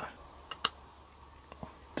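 Light metallic clicks of a piston oil control ring and its coil expander spring being worked into the piston's groove by hand. There are two sharp clicks about half a second in, then a couple of fainter ticks.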